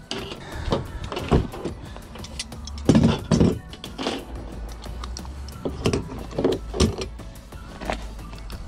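Background music, with tools being handled and packed into a fabric tool backpack: short knocks, clicks and rustles, the loudest about three seconds in.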